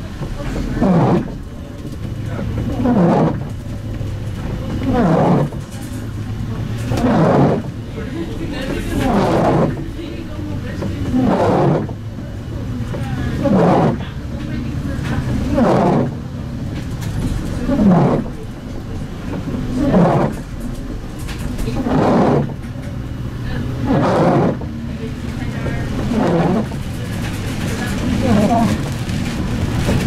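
Windscreen wiper blade chattering on the wet glass of a bus windscreen, a falling squeal with each sweep, about one every two seconds, over the steady low running of the MAN Lion's City CNG bus.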